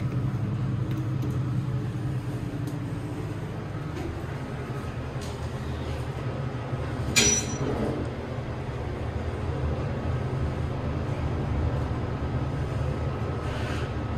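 Montgomery traction elevator cab travelling down, a steady low rumble of the ride heard from inside the car. A single brief sharp click comes about halfway through.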